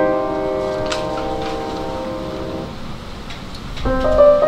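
A piano chord ringing on and fading away over about two and a half seconds, a short lull, then the piano playing again just before the end.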